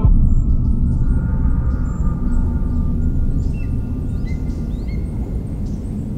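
A deep, low boom hits at the start with a faint ringing tone that dies away over about two seconds, then a steady low rumble carries on. A few faint bird chirps come through about halfway.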